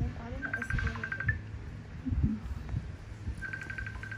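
A phone ringing: a short, high, trilling electronic ring that comes twice, about half a second in and again near the end, with quiet talk between.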